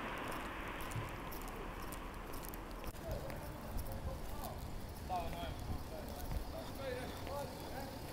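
Footsteps on a pavement while walking, with faint background voices coming in from about three seconds in.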